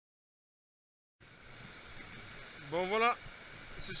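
Total silence for about the first second, then the faint steady rush of a mountain stream running over rocks; a man's voice comes in near the end.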